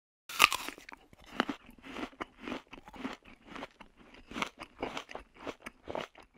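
Crisp apple being bitten and chewed close to the microphone: a first loud crunch, then a run of irregular crunchy chewing, two or three bites a second.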